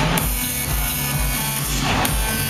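Electronic house music played loud over a club sound system, with a steady kick drum about three beats a second under synth notes and a swell of hiss near the end.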